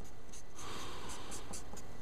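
Felt-tip marker writing on paper: a steady rubbing of the tip across the page that starts about half a second in.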